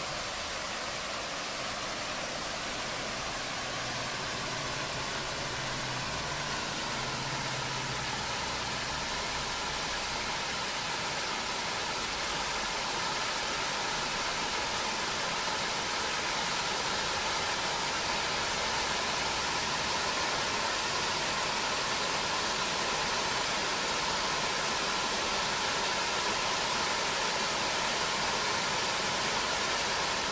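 Water from an artificial rock waterfall splashing into a pond, a steady rushing noise that grows slightly louder partway through as the flow of water increases.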